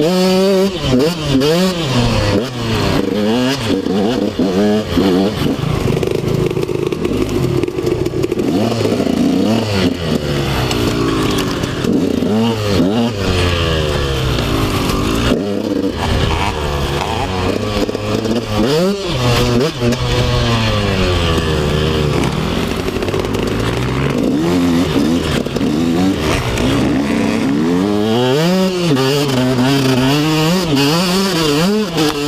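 KTM 125 SX two-stroke single-cylinder engine being ridden hard, its revs climbing and dropping again and again with throttle and gear changes, with knocks and clatter from the bike over bumps.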